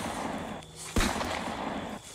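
A single rifle shot about a second in, followed by a long fading tail. The tail of the shot before it dies away at the start.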